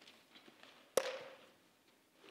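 Handling of a plastic water bottle: faint small ticks, then a single sharp knock about a second in with a brief ringing tail.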